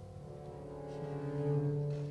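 Contemporary chamber ensemble of strings, piano and clarinet holding long sustained notes. Several tones sound together, softly at first, gradually swelling, with a low note entering about a second in.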